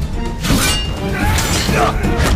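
Fight-scene soundtrack: dramatic score under shouts and grunts of fighters, with a sharp crash about half a second in.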